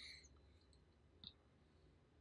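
Near silence with room tone, and one faint short click a little over a second in.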